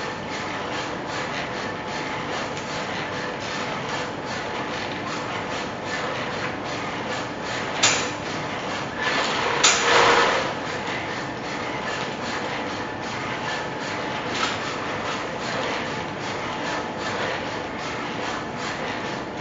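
Humanoid robot walking: its joint drives run with a steady mechanical whine, under a regular patter of footfalls. A sharp knock comes about eight seconds in. Just under two seconds later a louder, scuffing burst follows as it is shoved and steps quickly to keep its balance.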